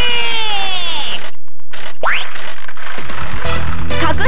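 Daiichi CR Osomatsu-kun pachinko machine playing its electronic jackpot sound effects: falling whistle-like glides, a quick rising whistle about two seconds in, then a jingle with a beat starting again near the end. This sequence goes with the machine's big win turning into a probability-change (kakuhen) mode.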